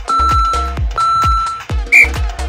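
Workout interval timer beeping its countdown: two longer beeps about a second apart, then a short, louder, higher beep at the end that marks the start of the next work interval. Electronic dance music with a steady beat plays underneath.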